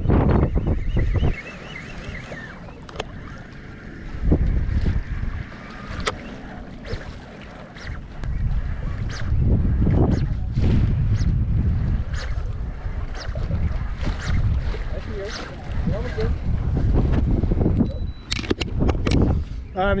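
Wind buffeting the microphone in uneven gusts, a low rumble that swells and fades, with scattered sharp clicks from spinning fishing reels being worked.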